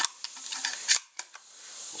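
A handful of short metallic clicks and clacks from handling an SKB Ithaca 900 shotgun and its shells. The loudest comes a little under a second in.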